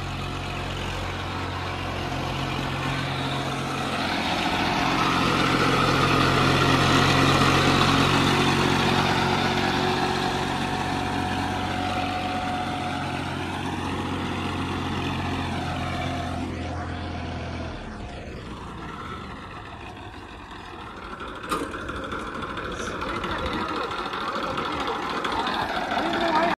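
A 2002 Massey Ferguson 1035 tractor's three-cylinder diesel engine running under load as it pulls a sand-laden trailer up a sandy slope, its drone swelling and easing. The engine's low drone cuts out about eighteen seconds in, and a few sharp clicks follow.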